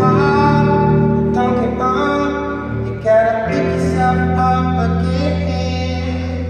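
Double-neck electric guitar played live through an amplifier: ringing, sustained chords that change every second or so, with a sharp new strum about three seconds in.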